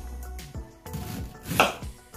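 Kitchen knife cutting through a fresh ginger root on a wooden cutting board: a few knocks of the blade on the board, the loudest about a second and a half in as the piece is cut off.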